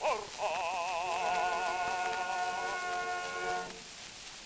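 A bass voice holds the closing note of an operatic aria with a wide vibrato, under a sustained orchestral chord, on a 1907 acoustic 78 rpm disc recording. The music cuts off about three and a half seconds in, leaving only the disc's surface hiss.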